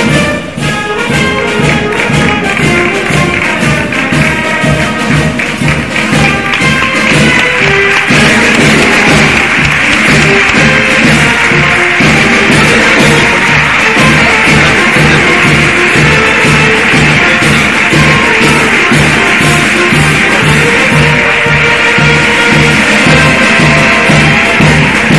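A brass band playing a march with a steady beat, and audience applause joining in about eight seconds in and continuing under the music.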